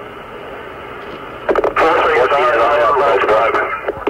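Steady radio hiss on the mission-control communications loop. About a second and a half in, a voice comes over the loop, sounding thin and telephone-like, and talks until near the end.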